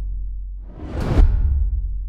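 Cinematic title-card sound effect: a deep boom rings on, then a rising whoosh swells into another deep boom hit about a second in, whose low rumble fades away.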